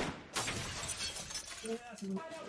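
Film soundtrack: a sharp crack, then a dense run of crashing, shattering noise, with a voice coming in near the end.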